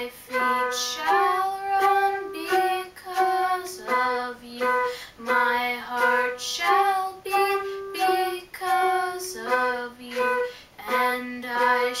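Music: a girl singing a slow melody in short held phrases, with flute and electronic keyboard accompaniment.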